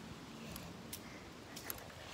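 Faint rolling noise of a bicycle riding over asphalt, with a couple of light clicks.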